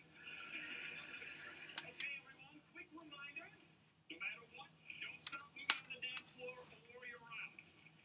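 Faint voices in the background, with a few sharp clicks.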